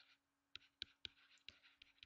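Faint ticks of a stylus on a drawing tablet as a word is handwritten: about five light, separate taps spread through the two seconds, over a faint steady low hum.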